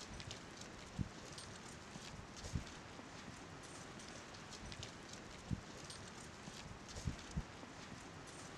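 Faint steady hiss with about five brief low thumps scattered irregularly, the last two close together near the end, and light high clicks in between.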